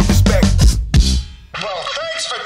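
A live band with drum kit, together with a DJ scratching a record on a turntable, plays to a final accented hit about a second in that briefly rings out. A man's voice starts speaking near the end.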